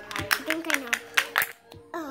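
Several sharp taps of a small plastic Littlest Pet Shop toy figure knocking against a tile floor as it is made to fall, in the first second and a half. Quiet background music holds a steady note under them.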